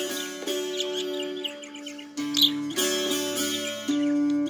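Plucked-string music playing from a tablet, with a budgerigar chirping along over it and giving a sharper call about two and a half seconds in.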